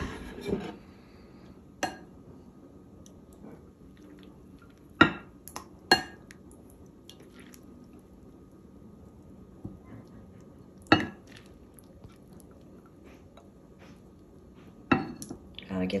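Metal serving spoon clinking against a glass bowl and a plate as soup beans are ladled out: about five sharp, short clinks spread out with quiet stretches between, the loudest about five and eleven seconds in.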